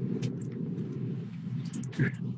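Steady low hum with a few faint clicks of computer keys being pressed.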